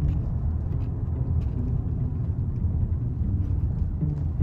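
Steady low road rumble of a taxi in motion, heard from inside the cabin.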